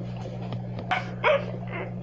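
Two short, high yips from a small dog, the second fainter, preceded by a sharp click about a second in, over a steady low electrical hum.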